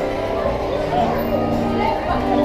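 Carousel organ music playing steady held notes, with the voices of riders and children chattering over it.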